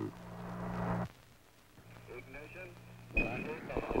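Apollo air-to-ground radio channel: a steady low hum with hiss and a faint, distant voice under it. A high steady tone comes in near the end.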